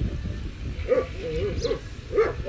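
A dog giving a quick run of short, whiny yelps, starting about a second in.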